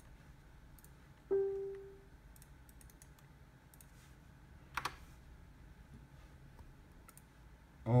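Faint computer mouse clicks over quiet room tone. About a second in, one short pitched tone sounds and fades within a second, and there is a sharper click near the five-second mark.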